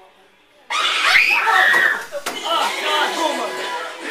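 Sudden loud screaming breaks out about a second in, a class of teenagers shrieking in fright, then carries on as shouting, excited chatter and laughter.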